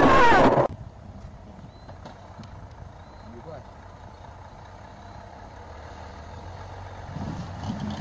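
A loud voice cuts off abruptly under a second in. After it, a semi-truck's diesel engine runs low and steady at a distance as the truck approaches slowly, getting a little louder near the end.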